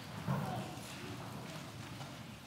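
Congregation getting to its feet: faint shuffling, footfalls and knocks of seats as people stand.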